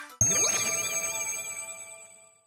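A bell-like chime sound effect: one bright ding that strikes suddenly and rings out, fading away over about two seconds, with a wavering high shimmer on top.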